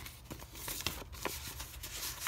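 Paper index cards and a paper envelope being handled and slid together: light paper rustling with a series of small crisp ticks.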